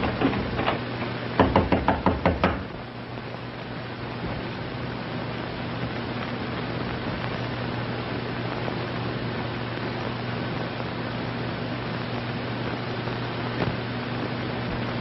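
Knocking on a wooden door: a quick run of about eight raps starting about a second and a half in. After that only the steady hiss and hum of an old film soundtrack.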